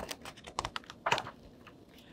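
Page of a hardcover picture book being turned by hand: a scattering of short, crisp ticks and paper rustles over about a second and a half.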